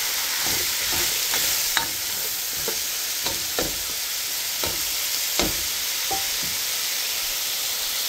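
Diced potatoes, onion and crumbled beef sausage sizzling in a frying pan in the sausage's own fat, while a spatula stirs and scrapes through them with a stroke about every second. The stirring stops about six seconds in, leaving the steady sizzle.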